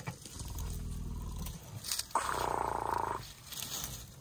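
African elephant calling: a low rumble lasting about a second, then a louder, higher-pitched call about two seconds in.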